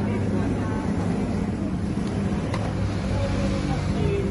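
A motorcycle engine running steadily, with people's voices over it.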